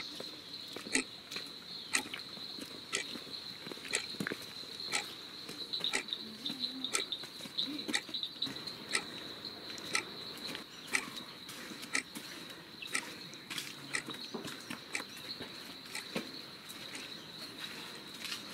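Steady, high-pitched drone of insects, with sharp ticks about once a second.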